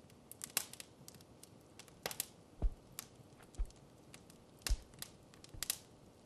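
Quiet room tone with scattered faint clicks and a few soft, brief low thumps.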